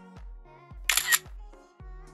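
Background electronic music with a pulsing bass line; about a second in, a short, loud camera-shutter click sound effect cuts over it.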